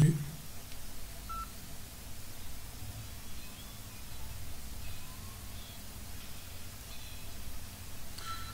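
A single short electronic beep about a second and a half in, over a faint low hum in a quiet small room.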